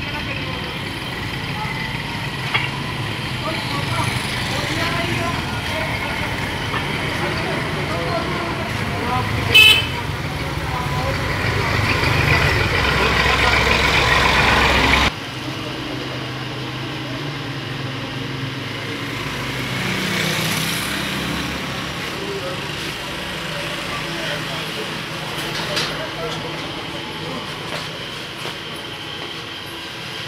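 Street traffic noise with motor vehicles running. There is a brief horn toot about ten seconds in, and engine noise swells over the next few seconds. That noise cuts off suddenly about halfway through, leaving a quieter steady background with faint voices.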